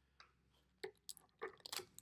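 Faint, irregular clicks and crackles of scissors cutting a strip of sellotape, more of them in the second second.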